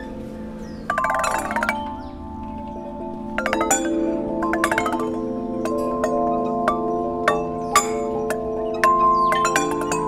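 Outdoor playground tubular chime instrument: upright metal tubes of graded length are struck with a wooden stick, each ringing a different note. There are a few strikes about a second in, then a quick, uneven run of notes from about three and a half seconds on.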